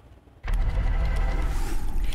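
Steady low rumble of a news helicopter's engine and rotors from the live aerial feed, cutting in abruptly about half a second in, with a rising whoosh near the end.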